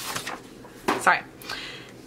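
Handling of a disc-bound paper planner: the stiff cover being lifted back and loose papers inside shifting and sliding, with a short scrape at the start and a sharp knock just before a second in.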